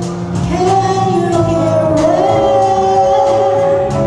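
A live jazz band: a woman singing long held notes into a microphone over piano, bass and drums, with steady cymbal strokes.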